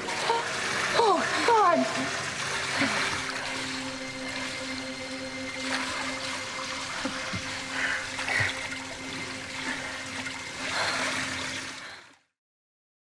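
Pool water sloshing and lapping around people treading water, with a woman's short falling cries early on. A low held note of film score music comes in a couple of seconds in and runs beneath the water sounds.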